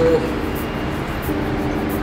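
A steady mechanical hum: a low drone with a few held tones under it, unchanging throughout.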